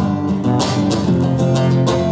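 Acoustic guitar strummed in a steady rhythm, chords ringing between strokes.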